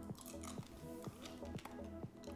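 Quiet background music with a steady beat.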